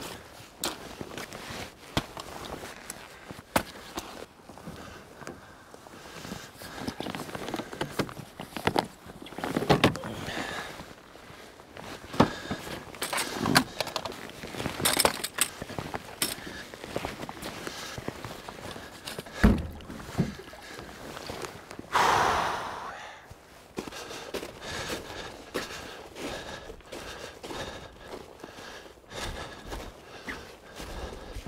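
Gear being unloaded from a kayak: scattered knocks and thunks against the hull and the rustle of dry bags being pulled out and set down on rock, with one louder rustle about 22 seconds in.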